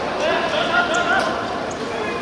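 Players' raised voices calling out across a small-sided football pitch, with the ball being kicked on the hard court.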